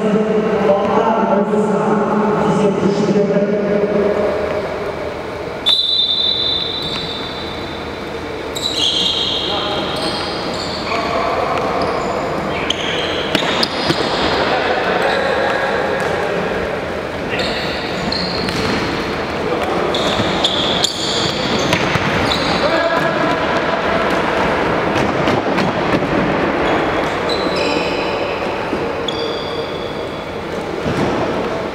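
Futsal play on a wooden sports-hall floor, echoing in the hall: many short, high-pitched squeaks of players' shoes on the boards, a sharp thud of the ball being kicked about six seconds in, and voices calling out at the start.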